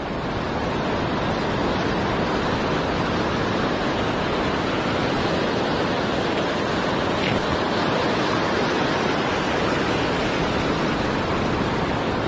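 Ocean surf breaking and washing up the sand: a steady, even rushing.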